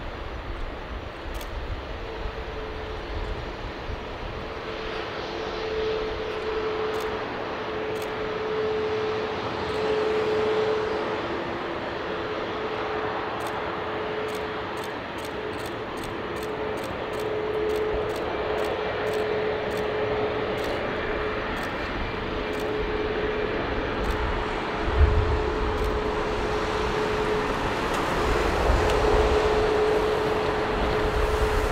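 Boeing 737 MAX 8's CFM LEAP-1B turbofans idling as the airliner taxis, a steady whine over a broad hiss. A brief low thump comes about 25 seconds in.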